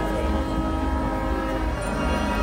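A loud sustained chord of several steady held tones played over outdoor PA speakers, with a deep low rumble beneath; the lower tones break off near the end.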